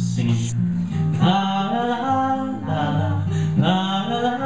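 Acoustic guitar strummed as a man sings a wordless 'la la' chorus, his voice coming in about a second in.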